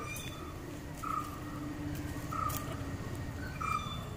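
A bird calling one short clear note over and over, about once a second, with fainter answering notes in between.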